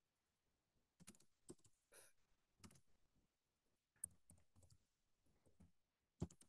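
Faint computer keyboard typing: irregular key clicks starting about a second in, the loudest about four seconds in.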